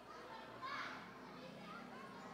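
Overlapping chatter of many people talking at once in small discussion groups, with no single clear voice; one higher voice rises briefly above the rest about half a second in.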